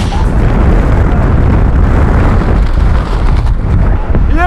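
Loud, steady low rumble of air rushing over the camera microphone as a tandem parachute deploys, the wind buffeting of the transition from freefall to canopy flight.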